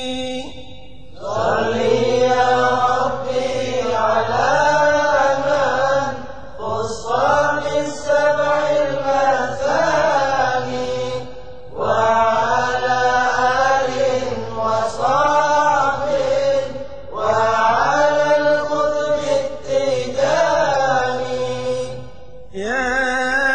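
A voice chanting an Arabic qasida in praise of Ahmad al-Tijani (Abu al-Abbas), in drawn-out phrases of a few seconds with the pitch bending inside each and brief pauses for breath between.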